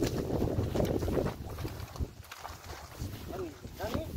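Wind rushing over the microphone, loudest in the first second or so, over the movement of a water-buffalo cart loaded with paddy sheaves along a wet, muddy track. A few short gliding calls near the end.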